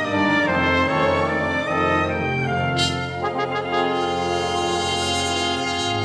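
A brass quintet playing with a symphony orchestra: trumpet, trombones and French horn over the strings in held notes, with a sharp accent about three seconds in.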